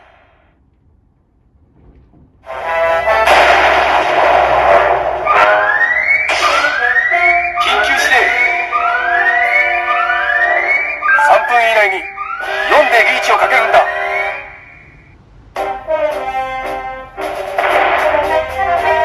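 Kyoraku CR Pachinko Ultraman M78TF7 pachinko machine's speaker playing its reach presentation. After a quiet couple of seconds a loud alarm-like effect starts, with a sound sweeping up in pitch over and over, about once a second, along with a voice. Brass music follows near the end.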